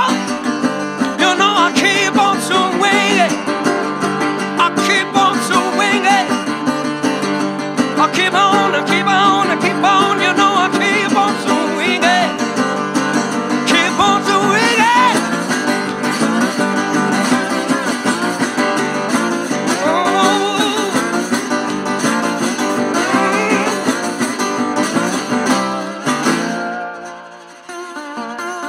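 Acoustic rock performance: a male singer's high, wordless wailing with heavy vibrato over strummed guitar chords. About 26 seconds in the band drops out and a resonator guitar carries on alone, quieter.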